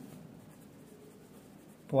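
Pen writing on paper: faint scratching of the pen strokes.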